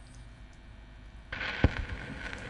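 Stylus set down into the lead-in groove of a spinning shellac 78 rpm record: a faint low turntable rumble, then about two-thirds of the way through the surface hiss and crackle start suddenly, with one sharp click just after.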